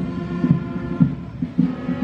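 Band playing march music for marching troops, sustained brass-like notes over a steady beat of about three pulses a second.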